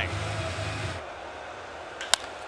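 Steady ballpark background noise from a baseball broadcast: a low hum under an even crowd-like hiss. It drops noticeably quieter about halfway through.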